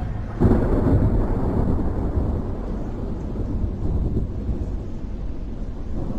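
A sudden deep boom about half a second in, followed by a long low rumble that slowly fades.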